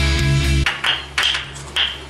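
Loud rock music with guitars cuts off about two-thirds of a second in. Sharp wooden knocks follow, about two a second, each with a short ringing tone: a Tok Sen tamarind-wood mallet tapping a wooden wedge held against the body.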